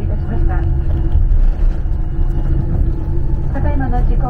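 Jet airliner cabin during taxi: a steady low rumble with a steady hum from the idling engines and the rolling aircraft. Passengers' voices are heard briefly about half a second in and again near the end.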